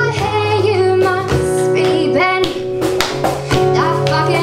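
A woman singing live over her own strummed acoustic guitar.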